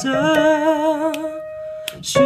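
A voice sings the song's melody to show its dotted rhythm: a short note, then a long held note with vibrato that fades out about halfway through, leaving a steady piano tone.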